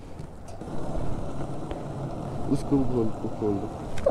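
Petrol gushing from a pump nozzle into a plastic jerrycan: a steady rushing noise. A voice speaks faintly about two and a half seconds in.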